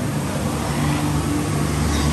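Steady low hum and hiss of a dark indoor boat ride's ambience, with a few held low tones and no distinct events.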